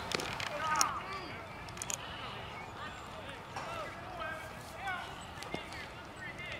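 Voices of players and spectators calling out and chattering across a ball field, with two sharp knocks in the first second, the second the loudest sound.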